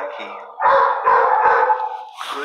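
Dogs in shelter kennels howling and barking, with one drawn-out call of about a second starting about half a second in.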